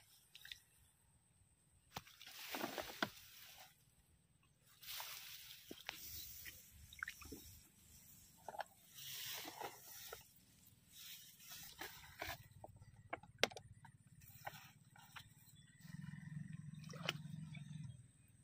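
Rice plants rustling and shallow muddy paddy water sloshing as hands grope between the stalks picking up freshwater snails: faint, irregular swishes with a few sharp clicks and a low rumble near the end.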